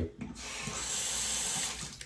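Water running from a sink tap for about a second and a half, starting just after the start and stopping shortly before the end.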